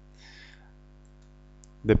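A quiet pause in speech over a steady low electrical hum, with a short breath near the start and a few faint clicks. A voice begins speaking near the end.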